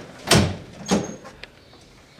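A door banging about a third of a second in, then a second, lighter knock about half a second later and a faint click. The door is a glass-panelled entrance door with push bars.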